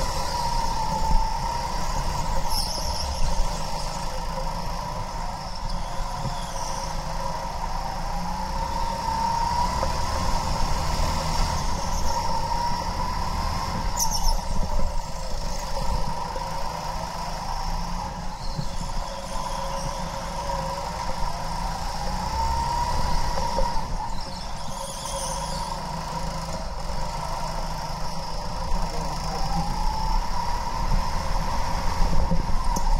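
Go-kart motor running at speed, its pitch rising and falling every few seconds as the kart speeds up and slows down, over a steady low rumble. A few brief high squeals cut in now and then.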